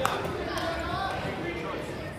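Voices of spectators calling out and talking in a gymnasium, with one sharp knock or clap right at the start.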